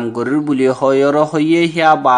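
Only speech: a man's voice talking continuously, like news narration.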